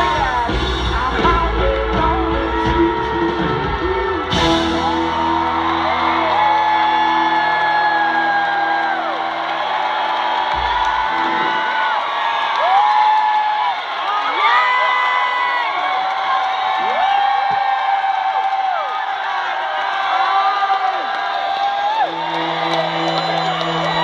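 Live rock band finishing a song: a final hit about four seconds in, then a held chord that dies away by about twelve seconds. A large crowd cheers and whoops throughout, and a steady low tone from the stage returns near the end.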